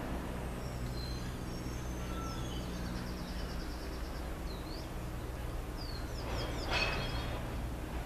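Small birds chirping: a short rapid trill partway through and a cluster of quick sweeping chirps near the end, the loudest moment, over a steady low hum.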